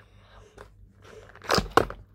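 Two sharp crunching knocks close to the microphone about one and a half seconds in, after a faint stretch: something being handled against the phone.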